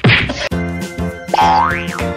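A springy comedy 'boing' sound effect, then light background music with a whistling glide that rises and then drops back, about a second and a half in.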